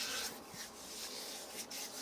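Hands rubbing together: a soft, steady rubbing.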